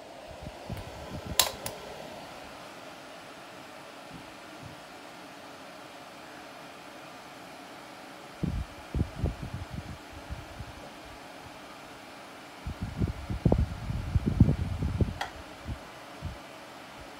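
A Dyson bladeless desk fan and a Status tower fan running on their high setting, giving a steady airy hiss. There is a click about a second and a half in, and bouts of low, irregular buffeting around the middle and near the end.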